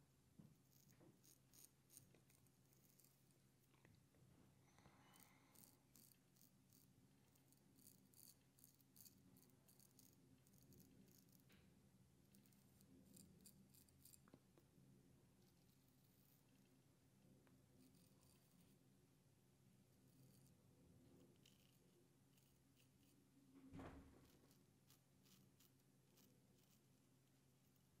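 Very faint scratchy crackle of an 8/8 straight razor cutting five-day beard stubble through lather, coming in short runs of rapid scrapes. There is one soft thump near the end.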